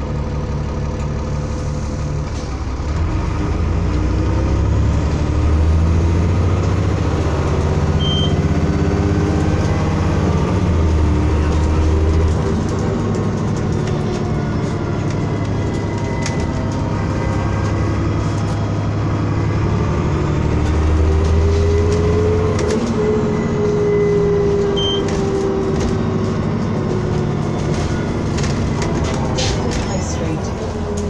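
Inside a Transbus Trident double-decker bus on the move: the diesel engine and transmission pull up through the revs twice, with a rising whine, under a steady road rumble.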